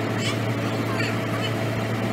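Heavy diesel construction machinery, the crane and piling-rig engines, running at a steady low drone, with a few brief faint higher-pitched sounds over it.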